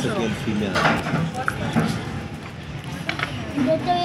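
Mostly people's voices talking in short snatches, with a few light clicks in between.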